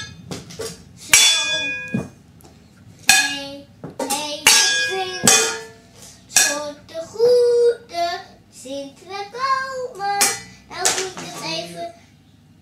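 A young child sings and chants while banging on stainless-steel cooking pots and pot lids as a makeshift drum kit, with several sharp metallic clangs, some of which ring on briefly after the strike.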